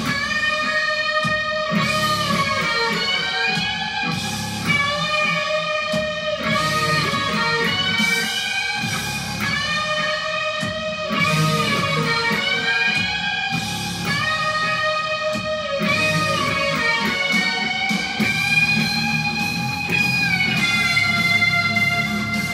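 Solo on a distorted Les Paul-style electric guitar: a melody of long sustained notes that bend and slide from one pitch to the next, one every second or two.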